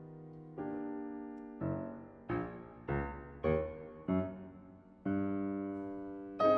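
Solo grand piano playing a slow succession of struck chords, about one every half second to second, each ringing and fading before the next.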